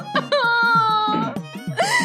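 Dramatic background score: a long, held, wailing melodic line that falls slightly, over a steady rhythmic beat, with a rushing swell of noise near the end.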